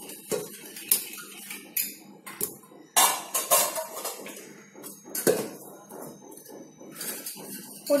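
Stainless-steel pressure cooker and its lid clinking and knocking as pieces of raw shark are put into the pot: a run of separate sharp metal knocks, the loudest about three seconds in and about five seconds in.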